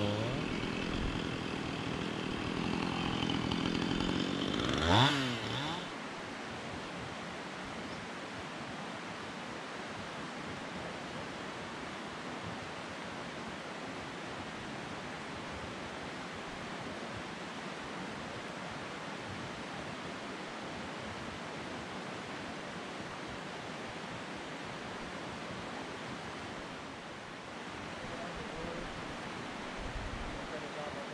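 Two-stroke chainsaw running in the clearing for the first few seconds, with a brief rev rising in pitch about five seconds in, then it stops. After that only a steady, even outdoor hiss remains.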